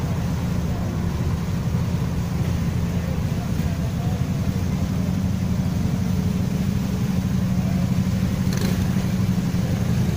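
Steady low rumble of street traffic and running car engines, with a short noise about a second before the end.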